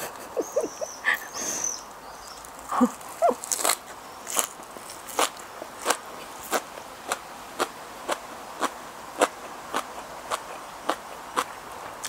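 Close-up chewing of crisp raw vegetables and leafy greens. From about three seconds in, the crunches come steadily, about two a second, with a few small hums from the mouth before them.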